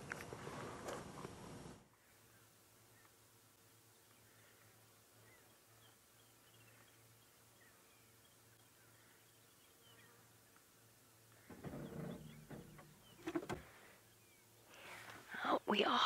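Faint bird chirps in the bush: scattered short high calls over a low steady hum. A hiss cuts off about two seconds in, and a couple of brief louder low sounds come near the end.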